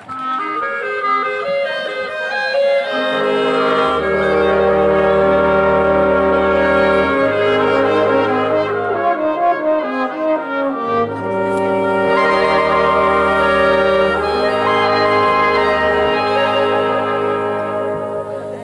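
Folk brass band playing an instrumental passage: clarinets and brass chords over a tuba bass line that comes in about four seconds in, the music dying away near the end.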